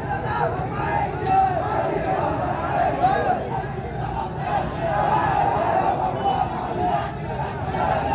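A large marching crowd's voices, many people shouting and calling out together in a continuous din.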